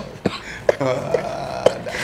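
A man chuckling quietly and throatily, a few short low sounds rather than words.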